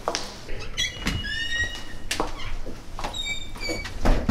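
Footsteps on a hard floor and a door being worked, with two short runs of high chirping tones, one about a second in and one near the end.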